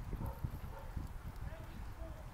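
Low rumble with faint, irregular knocks: handling noise on a handheld phone's microphone.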